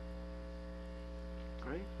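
Steady electrical mains hum, buzzy with a stack of overtones, at an even level throughout.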